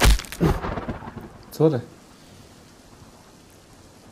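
A loud thunderclap right at the start, rumbling away over about a second, followed by steady rain.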